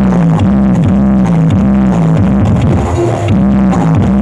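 Loud electronic dance music played through a truck-mounted parade sound system, with a bass line of short repeated notes.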